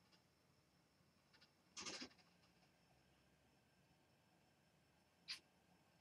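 Near silence: room tone, broken by one brief faint noise about two seconds in and a short click shortly before the end.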